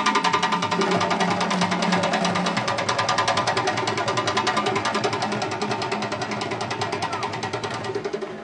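A fast, even drum roll of about ten strikes a second from a traditional West African percussion ensemble, starting suddenly just before and fading slightly toward the end, under a held low tone during the first couple of seconds.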